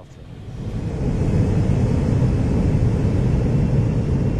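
Airbus A400M's four turboprop engines on a low landing approach: a steady low rumble that swells over the first second and then holds.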